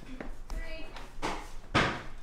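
People talking quietly in a small room, with a couple of short breathy, noisy sounds near the end.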